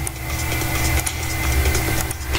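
Steady low hum in the recording, with a few faint mouse clicks as walls are shift-clicked to select them.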